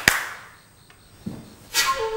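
Sharp hand claps at the very start, a summons for someone to be brought in. Near the end a dramatic music cue comes in.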